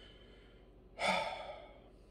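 A man's audible sigh: one breathy exhale about a second in that fades away quickly, with a fainter breath just before it.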